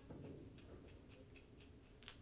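Near silence with faint, quick light ticks of a detail brush dabbing acrylic paint onto canvas.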